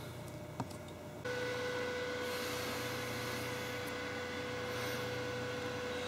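A small electric fan running: a steady air noise with a steady low hum, starting abruptly about a second in.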